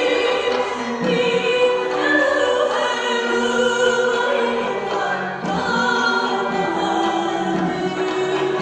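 Armenian folk song performed live: a woman's voice sings sustained, ornamented phrases over a traditional ensemble of plucked oud and kanun with wind instruments.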